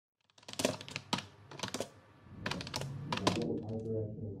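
A run of about nine sharp, irregular clicks and taps, typing-like in rhythm, over a low hum that comes in about halfway.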